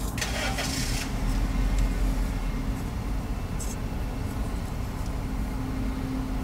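Car engine idling, heard from inside the cabin as a steady low rumble. A brief hiss comes in the first second.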